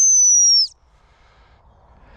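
A single long blast on a gundog whistle, one steady high tone that dips slightly in pitch and stops about two-thirds of a second in: the sit (stop) whistle given to a working cocker spaniel out in the field. Only faint outdoor background follows.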